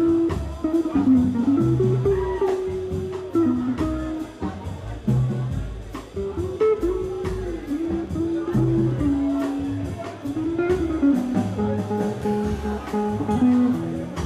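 Small jazz group playing live: a melody line with held, sliding notes over walking double bass and drums, with regular cymbal strokes.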